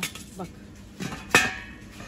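A stainless steel lid set onto a large 28 cm steel stockpot. There are a couple of light knocks, then one sharp clank of metal on metal about a second and a half in, with a brief metallic ring.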